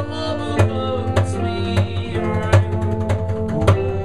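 A small band playing a song live: acoustic guitar and acoustic bass guitar, with held melody notes, over a steady drum beat of a little under two hits a second.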